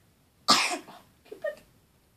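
A person coughs once, sharply, about half a second in, followed by a short, quieter voiced sound about a second later.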